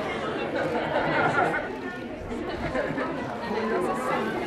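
Indistinct chatter of several people talking at once, with no single voice clear.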